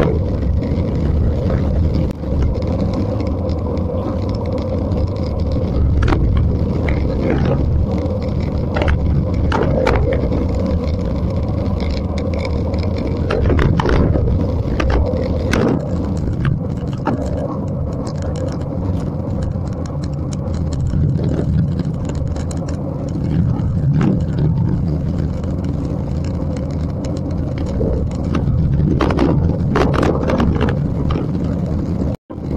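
Wind rushing over the microphone of a camera on a road racing bicycle moving at about 50–60 km/h in a pack of riders, a steady loud rumble with tyre noise, broken by occasional sharp clicks from the bikes.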